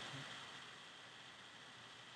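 Near silence: a faint, steady background hiss of room tone.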